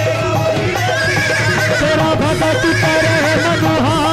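Live Hindu devotional bhajan: voices singing a sliding, ornamented melody over steady instrumental accompaniment with a sustained drone.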